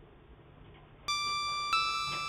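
A few faint clicks, then about a second in a reggae backing track (riddim) starts with a ringing, bell-like keyboard note, followed by a second slightly higher note about half a second later, both slowly fading.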